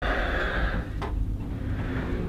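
Hotel elevator car interior: a steady low rumble and hiss, with a single sharp click about a second in.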